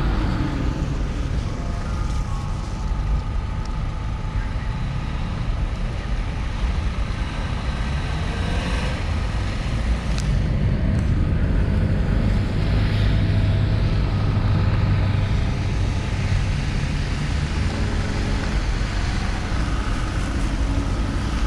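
Street traffic: cars driving past on a wet road, a steady rumble of engines and tyres that grows louder about halfway through.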